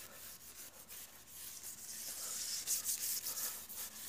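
A hand-held scrubber rubbed back and forth over a hard, glossy floor: a hissing scrape in quick repeated strokes, louder in the second half.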